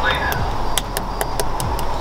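Cooked tomahawk ribeye crackling on a hot grill grate as a carving fork presses into it: a string of about ten sharp, irregular pops over a steady low hum.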